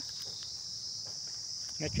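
A steady, high-pitched, unbroken chorus of insects, like crickets, sounding from the grass.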